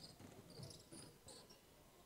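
Near silence in a gym, with a few faint, short high-pitched squeaks from basketball sneakers on the hardwood court in the first second and a half.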